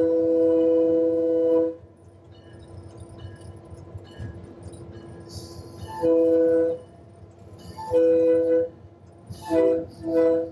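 Locomotive multi-chime air horn heard from inside the cab of an EMD F7: a long blast ending a couple of seconds in, then after a pause two long blasts and a short one, the start of the long-long-short-long grade-crossing signal. A low rumble from the running locomotive fills the gaps between blasts.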